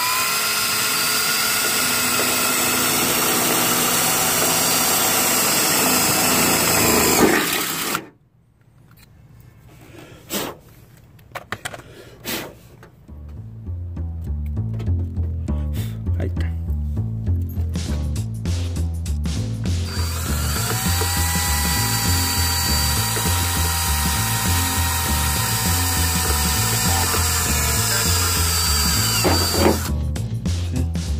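Cordless drill running steadily as a small bit drills a hole in a car's sheet-metal fender, for about seven seconds before it cuts off suddenly. After a few clicks, background music with a steady bass beat comes in, and the drill runs again for about nine seconds over the music, drilling the second hole.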